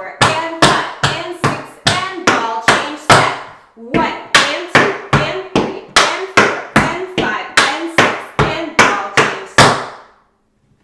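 Metal taps on tap shoes striking a wooden tap board in a steady run of roughly three sharp, ringing taps a second: stomp toe heel toe steps leading into paradiddles. There is a brief break a little under four seconds in.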